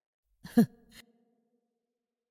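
A brief single vocal sound from a speaker, sigh-like, falling in pitch, about half a second in. It is followed by a faint click.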